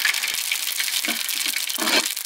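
Food sizzling in hot oil in a large aluminium cooking pot: a steady, dense crackling hiss.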